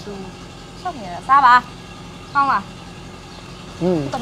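A person's voice in two short bursts, about one second and two and a half seconds in, over a faint steady background hum.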